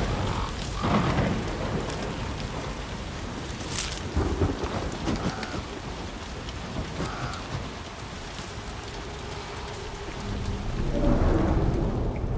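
Steady heavy rain with rolls of thunder, swelling about a second in, around four seconds in, and again near the end.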